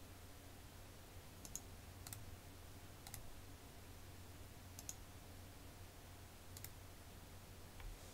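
Faint, scattered clicks of a computer mouse and keyboard, about five over several seconds, above a low steady hum.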